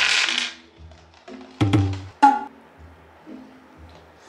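Dice rattling inside plastic cups shaken on a tabletop, stopping about half a second in. Then light background music with plucked notes, a bass line and a few sharp wood-block-like knocks.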